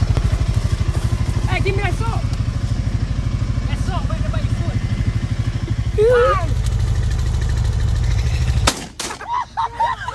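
An engine running at a steady idle with a fast low pulsing, with a few brief shouts over it. The engine sound cuts off abruptly near the end.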